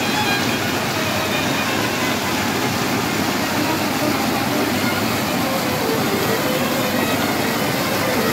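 Mountain stream rushing and splashing down over rocks in small cascades, a loud, steady rush of white water.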